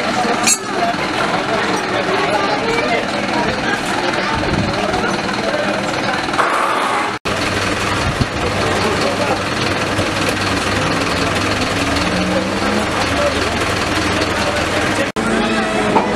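Several people talking over outdoor street noise. After an abrupt cut about seven seconds in, a truck engine idles steadily underneath the voices.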